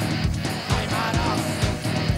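Rock band playing live: a drum kit keeps a driving beat under electric guitars.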